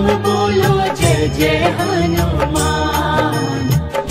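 Hindi devotional Hanuman bhajan music with a steady beat and melody. A sung word falls at the very start.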